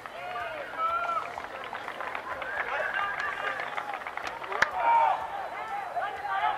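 Several voices calling out at once across an outdoor rugby field during open play, overlapping one another, with a single sharp knock about four and a half seconds in.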